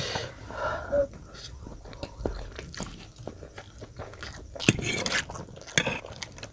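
Close-miked eating of Maggi instant noodles: wet chewing and biting, mixed with sharp clicks and scrapes of a metal fork against a foil tray, with a louder burst about five seconds in.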